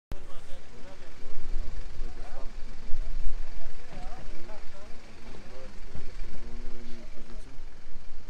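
Uneven low rumble of wind on the microphone, with people's voices talking in the background.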